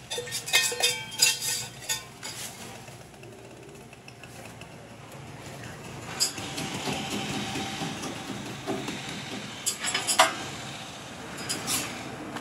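Steel cup and metal spatulas clinking and scraping on a flat-top griddle while a danbing (Taiwanese egg crepe) is cooked. From about six seconds in, a steady sizzle of egg frying on the hot griddle, with sharp spatula scrapes near the end as the crepe is lifted to flip.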